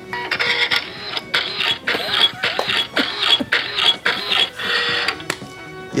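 Printer sound effect played from a phone: a mechanical printing noise in about eight rhythmic passes, roughly two a second, stopping shortly before the end.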